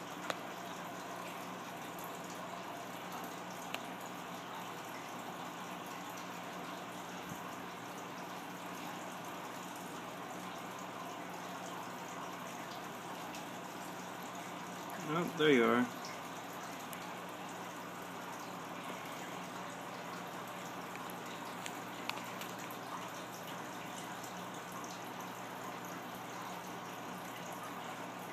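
Steady low hum and hiss of background room tone, with one short murmured utterance from a person about halfway through.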